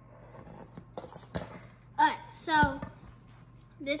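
A few light knocks and handling noises about a second in, then two short, loud voiced exclamations from a girl about halfway through, and her speech beginning right at the end.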